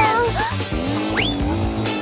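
Cartoon sound effect of a go-kart speeding away, with a quick rising zip about a second in, over background music.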